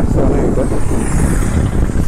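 Wind buffeting the microphone of a moving bicycle, with a motor vehicle passing in the opposite lane, its tyre hiss swelling and fading around the middle.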